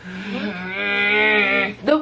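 A woman's long, drawn-out closed-mouth 'mmm' at a steady pitch, held for nearly two seconds while she thinks, ending in a quick gasp.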